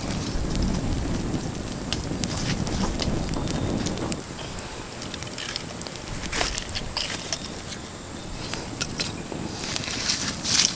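Small campfire of dry twigs burning and crackling, with a low rush for about the first four seconds. Scattered sharp pops and wooden knocks follow as apple-wood logs are laid on the flames.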